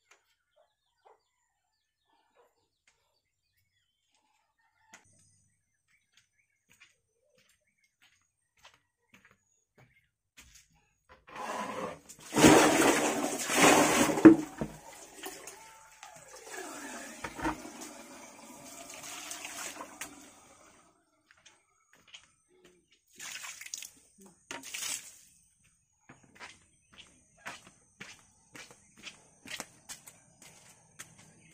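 Water splashing, loud for a few seconds about twelve seconds in and then fainter, followed by two short splashes and scattered clicks near the end. The first ten seconds are near silence.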